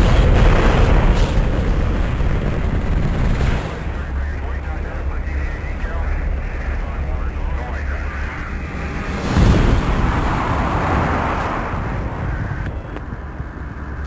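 Rocket launch roar from a space-shuttle liftoff recording: a deep, steady rumble that surges loudly at liftoff and again about nine and a half seconds in, with faint voices underneath.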